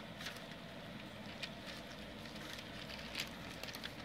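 A litter of four-week-old Goldendoodle puppies eating together from one dish, lapping and smacking at soft puppy food: a steady patter of small wet smacks and clicks.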